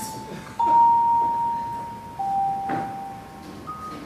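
Clean, bell-like single notes from an amplified band instrument, each struck and left to ring before the next one at a different pitch. New notes come in about half a second in, just after two seconds, and near the end, with a soft knock in between.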